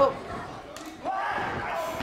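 A single thud about three-quarters of a second in, a body hitting the wrestling ring's canvas, over the noise of a crowd in a large hall. A voice calls out in the second half.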